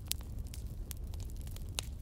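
Steady low rumble and faint hiss of background noise, with a few scattered faint clicks.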